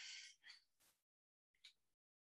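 Near silence: a spoken voice trails off in the first moments, followed by a faint short sound about half a second in and a tiny one near the end.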